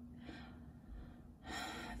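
Quiet room tone, then a woman's breath drawn in near the end.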